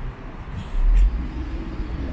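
Low rumble of street traffic, a vehicle passing on the road, loudest about a second in, with wind rumbling on the microphone.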